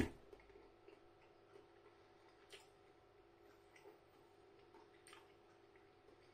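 Near silence: a bite of chicken chewed quietly with the mouth closed, giving a few soft, scattered clicks over a faint steady room hum.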